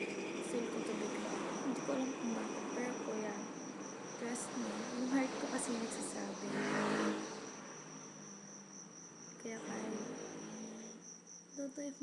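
A cricket trilling steadily at a high pitch, under a girl's low vocal sounds without clear words for the first several seconds; a short breathy burst about seven seconds in, then quieter until she starts speaking again at the end.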